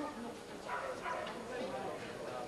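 Indistinct voices talking, too unclear to make out words.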